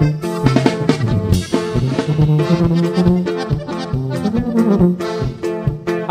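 Norteño band playing an instrumental break between sung verses: a lead melody over a walking bass line and a steady drum beat.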